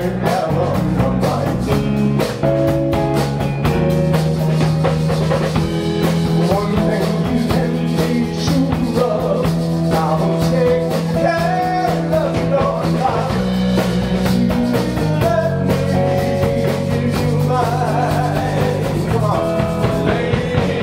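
A live rock band plays a song on electric guitar, bass guitar and drum kit, with a steady beat and no breaks.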